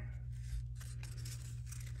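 Faint rustle of paper and cloth as a small handmade journal made from an old repurposed book is opened, its cover and pages handled, with a few soft taps near the middle.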